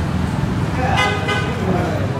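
Busy background of voices and a steady traffic hum, with a short horn-like toot from about a second in.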